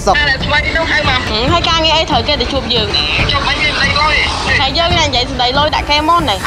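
Men talking, with steady road-traffic rumble underneath.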